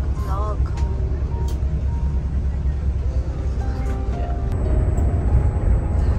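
Steady low rumble of a Higer coach bus driving along a highway, heard from inside the cabin. Faint voices and music sound over it.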